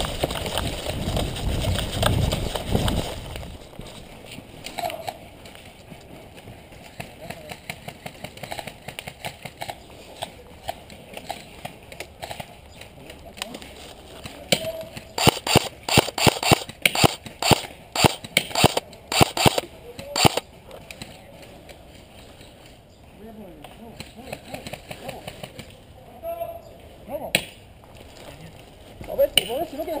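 Running footsteps and a heavy rumble on a body-worn camera for the first three seconds or so. From about the middle comes a quick string of sharp cracks from airsoft guns firing, some twenty shots over about five seconds.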